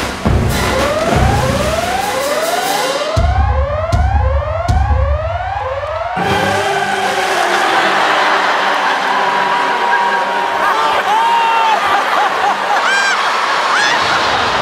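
A siren-like music cue of repeated rising sweeps, with heavy bass pulses under it in the middle, builds for about six seconds and cuts off sharply. Then a loud studio audience roars with cheers and screams, and a few high wavering calls rise out of it near the end.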